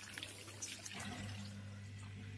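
Hotpoint Ariston LFT228A dishwasher's drain pump running with a steady low hum, which grows louder about a second in, while water pours from the drain hose. The pour fades partway through. The drain is working with normal flow.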